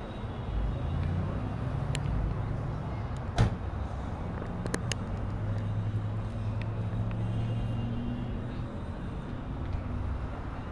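A car engine runs at low speed close by, a steady low rumble. A sharp click comes about three and a half seconds in, with a couple of fainter ticks just after.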